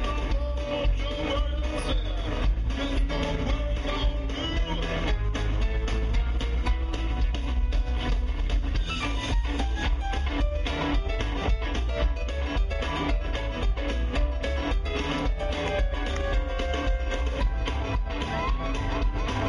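Live rock band playing: electric guitar leading over drums and keyboard, with a heavy bass and a steady beat.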